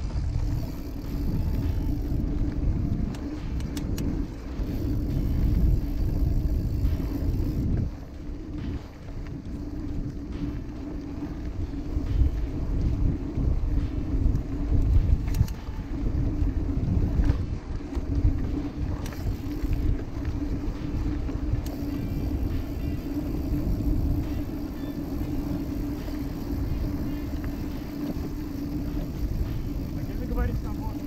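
A mountain bike rolling along a dirt track, heard through an action camera: an uneven low rumble of wind on the microphone and the knobby tyres on the ground, with a steady low hum running under it. The rumble eases about eight seconds in.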